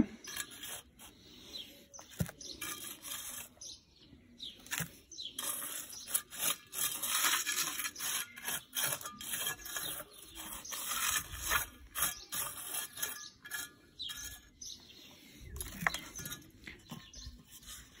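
A metal hand trowel scraping and smoothing loose soil to level it, with irregular soft scrapes and small taps.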